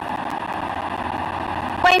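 Steady background noise of a large hall picked up by the podium microphones, an even hiss with a faint hum, in a pause between sentences of a speech. A woman's voice starts again near the end.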